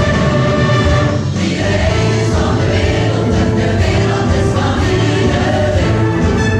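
Choir singing with orchestral accompaniment, performed live in a concert hall.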